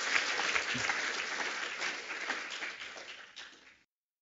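Audience applauding, the clapping slowly dying away and then cut off abruptly near the end.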